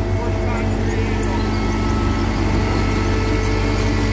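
Diesel engine of a Cat compact track loader running steadily while the loader creeps forward carrying a heavy load on its forks.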